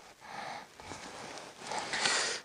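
A few soft rustles and scrapes of snow and clothing as a folding measuring rod is worked into a small hole in the snow-covered ice.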